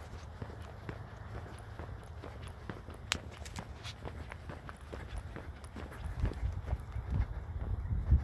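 Footsteps of a person walking on a paved road, a steady run of short irregular scuffs and taps, over a low rumble on the microphone that grows heavier in the last couple of seconds.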